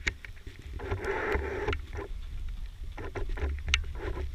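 A runner's footsteps on a gravel track and breathing, with a low rumble from the body-worn camera jostling as he runs.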